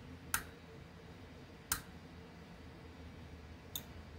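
Three short, faint clicks, spaced a second or two apart, as metal multimeter probe tips are set down on the pins of a chip on a crypto-miner hashboard, over a faint low steady hum.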